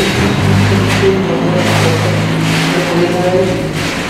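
A steady low engine hum lasting about three seconds, mixed with voices in the room.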